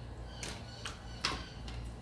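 Three light clicks from a hand handling an air fryer basket, about 0.4 s apart, over a faint steady low hum.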